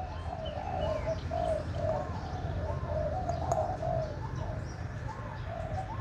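A bird calling in a quick, steady series of short notes, two or three a second, with a few faint higher chirps early in the series, over a low background rumble.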